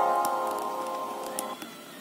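A Nokia 3110 classic's ringtone preview playing through the phone's small speaker: a held chord that fades and stops about one and a half seconds in. Faint clicks of the phone's navigation key sound as the next ringtone is selected.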